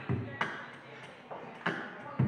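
A sparse percussive beat of low kick-like thumps and sharp snare-like cracks, a few hits a second, each ringing out briefly.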